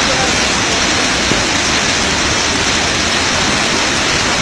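A loud, steady rushing noise, even and unbroken, with faint voices under it.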